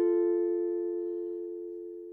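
Background music: a single plucked acoustic guitar chord rings on and slowly dies away.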